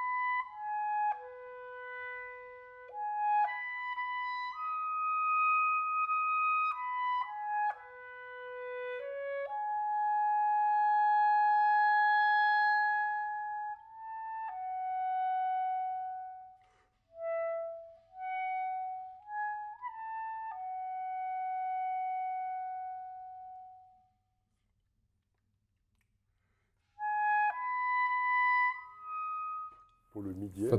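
Solo Buffet Crampon RC Prestige clarinet playing a repertoire passage: a melodic line of separate notes with leaps and several long held notes, broken by a pause of about three seconds, then a short phrase near the end.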